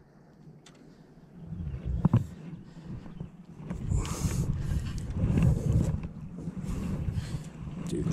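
A hooked largemouth bass splashing at the surface as it is reeled up beside the boat, over a low rumble of wind on the microphone. The sound starts near silent and grows louder from about a second and a half in, with short bursts of splashing, the strongest about four seconds in.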